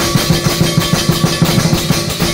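Lion dance percussion: a large drum beaten in rapid, steady strokes with cymbals clashing over it.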